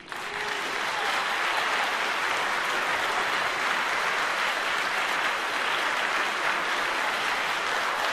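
Concert audience applauding, breaking out suddenly at the end of the piece and then holding steady.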